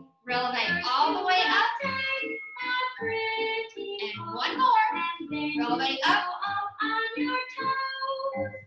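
A children's song with sung vocals over instrumental backing, played as the accompaniment for plié exercises.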